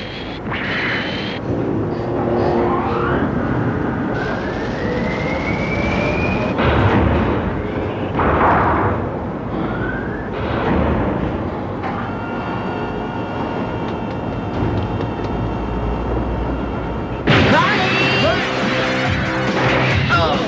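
Cartoon soundtrack music mixed with sci-fi sound effects: rising whooshing glides and swells in the first half, a steady held chord from about twelve seconds in, and a louder surge of music with guitar near the end.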